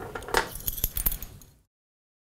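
A few light metallic clinks and rattles from a steel dental syringe being handled over a plastic sharps container, with the discarded glass anaesthetic cartridge rattling. The sound stops abruptly about one and a half seconds in.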